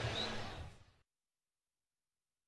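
Faint broadcast background sound fading out within the first second, then dead silence.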